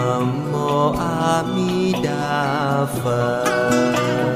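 Buddhist devotional chant sung slowly to a plucked-string accompaniment, the voice wavering on a held note about two and a half seconds in.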